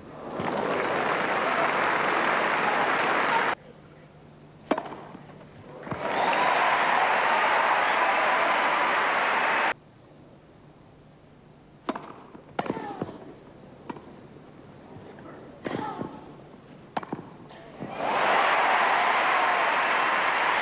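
Crowd applause that breaks off abruptly twice. Then comes a short tennis rally, a handful of sharp racket-on-ball strikes a second or so apart, and the applause rises again near the end.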